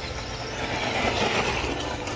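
LC Racing 1/14-scale electric RC truggy driven at full throttle across gravel: a steady rush of tyres on loose gravel, with a thin high motor whine starting about half a second in and dropping away about a second later.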